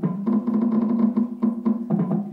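Drumming played as drum sounds on an electronic stage keyboard: a fast, even patter of hits over a steady low note, in the manner of African hand drums.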